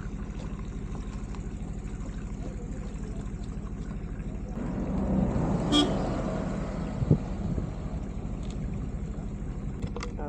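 A motor vehicle passes, swelling up from about halfway through, with a short horn toot near six seconds and a knock just after. Beneath it, an engine idles steadily in a quick even beat.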